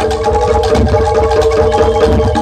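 Live Jaranan Dor music from a gamelan-style ensemble: ringing metallophone notes held over a fast, steady run of percussion strokes, with low drum beats underneath.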